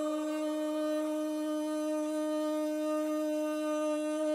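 Iraqi rababa, a single-string spike fiddle, bowed on one long steady note rich in overtones.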